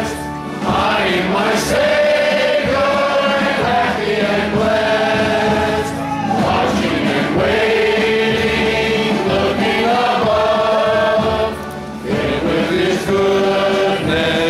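A congregation singing a hymn together, with short breaks between phrases just after the start, about six seconds in and near the end.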